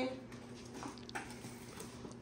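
Faint rustling and light handling sounds of a paper gift bag and tissue paper as a present is opened, a few soft scrapes over a low room background, just after a voice trails off.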